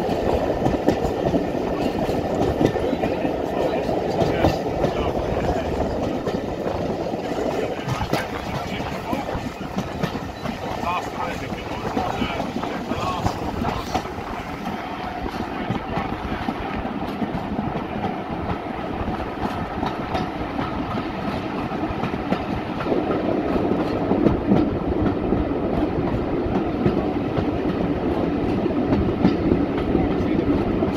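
Class 25 diesel locomotive D7612, a Sulzer six-cylinder diesel, running hard with its train, with a steady engine and running noise and a continuous patter of clicks that grows fuller in the last third.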